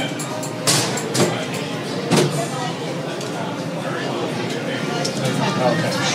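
Indistinct background voices of people around a trolley, with three sharp clicks or knocks in the first couple of seconds.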